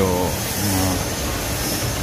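Steady rushing background noise of an indoor shopping-centre corridor, with a low man's voice sounding briefly near the start and again just before a second in.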